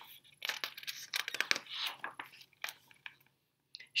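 Paper pages of a hardcover picture book being turned: a run of short, irregular rustles and crinkles lasting about two seconds.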